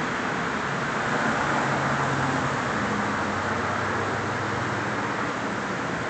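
Steady background hiss with a faint low hum underneath, unchanging throughout, with no distinct events.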